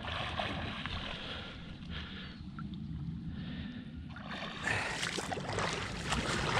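Sea water lapping and splashing close to a microphone at the water's surface, over a low rumble. From about four and a half seconds in the splashing grows louder as a swimmer's front-crawl strokes come near.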